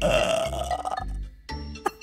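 A person's burp, loud and rough, lasting about a second before it stops, over background music with a steady pulsing bass beat.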